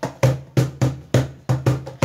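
Hand drum beaten in a steady dance rhythm, about four strokes a second, each stroke a deep thump with a sharp slap, accompanying a Bengali folk song between sung lines.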